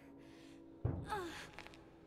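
A sudden thud about a second in, followed by a person's short gasping cry that falls in pitch, over a faint steady music drone.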